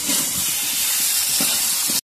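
Banana slices frying in oil and spice paste in a steel kadhai: a steady sizzling hiss, with a few light scrapes of a metal spatula stirring them.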